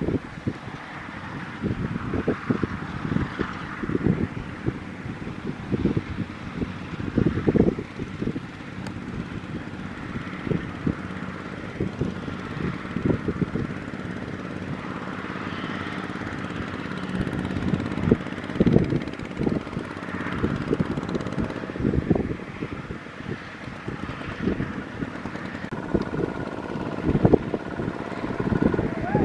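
Kubota ZT155 single-cylinder diesel engine of a two-wheel walking tractor running steadily under load as the machine, stuck in sticky paddy mud, hauls a loaded trailer. Irregular wind buffeting on the microphone sounds over it.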